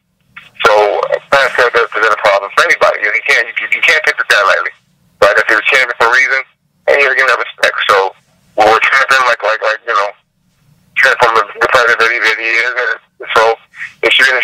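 Speech only: a person talking over a teleconference line, in phrases broken by short pauses.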